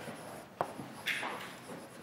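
Chalk writing on a blackboard: a light tap about half a second in, then a short scratching stroke a little after a second.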